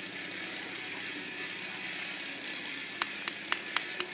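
Steady outdoor background noise, with four quick sharp clicks about a quarter second apart near the end.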